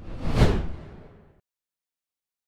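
A whoosh transition sound effect that swells to a peak about half a second in, then fades away by about a second and a half.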